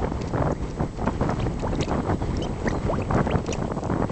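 Wind buffeting the microphone, with irregular glugging and plopping as gas bubbles swell and burst through the grey mud at a mud volcano vent.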